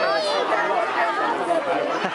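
Crowd of spectators chattering, many voices overlapping with no single speaker standing out.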